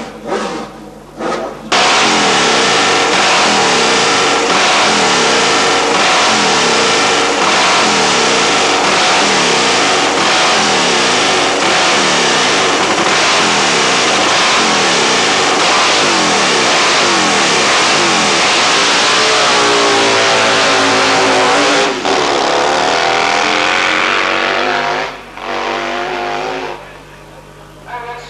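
Racing sprint motorcycle engine running loud and revving, its pitch rising and falling over and over. It breaks off briefly about two-thirds of the way through, runs on, then drops away near the end.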